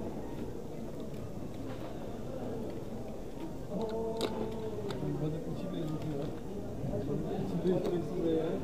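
Indistinct voices of people talking in the background, with the talk growing clearer about halfway through and a single sharp click near the middle.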